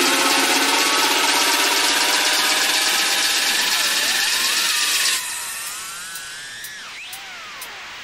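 Small FPV quadcopter's brushless motors and propellers whining, loud and harsh with hiss for about five seconds, then dropping sharply in level. After that the pitch glides up and down with the throttle.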